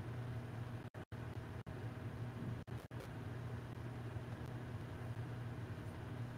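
Steady low electrical hum of room tone, broken about a second in and again near the three-second mark by several brief drops to dead silence.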